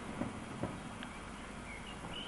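Outdoor dusk ambience: a steady hiss, two soft knocks in the first second, and a few short bird chirps near the end.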